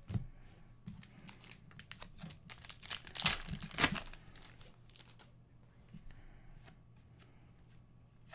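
Foil wrapper of an Upper Deck Series 1 hockey card pack being torn open, crackling and crinkling. The two loudest rips come a little past three seconds in and just before four, followed by quieter rustling as the cards come out.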